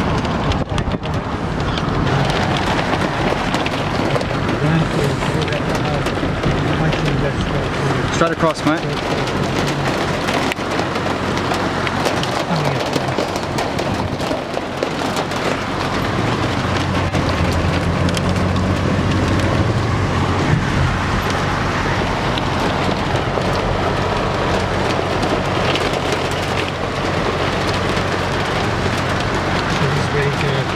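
Car driving in rain, heard from inside the cabin: steady engine and road noise with rain pattering on the car.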